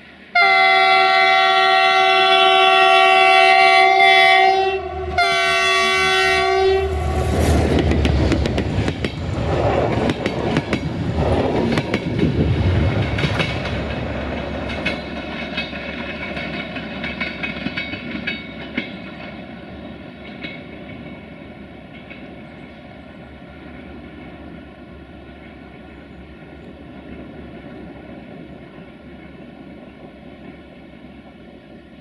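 CFR class 64 diesel locomotive sounding its chord horn in two blasts, a long one and then a shorter one, then passing close with a loud rumble and clatter of wheels over the rails as its passenger coaches go by, the noise fading away as the train recedes.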